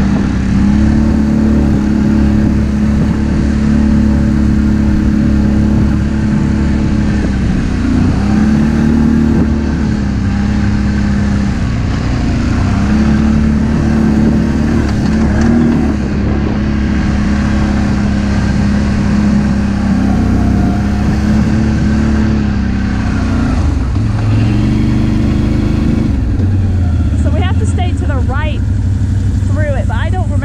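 An ATV engine running under throttle across sand, its pitch rising and falling as the throttle is worked and dropping to a lower, steadier note a few seconds before the end as the quad slows. Voices come in over the engine near the end.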